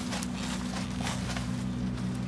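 Bunches of leafy greens rustling and knocking lightly against a plastic crate as they are handled and sorted by hand, over a steady low hum.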